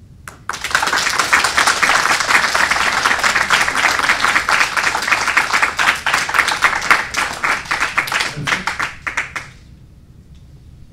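Audience applauding, starting about half a second in and thinning to a few last separate claps before stopping near the end.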